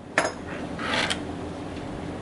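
Plastic RC car chassis being picked up and handled, a click just after the start and a short clatter of plastic parts about a second in.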